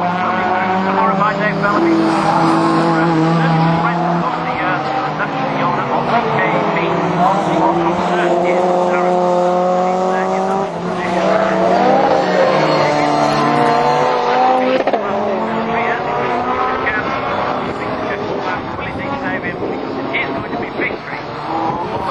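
Rallycross cars' engines revving hard and changing gear as they race around the circuit. Several engines run at once, their pitches rising and falling, with some tyre squeal.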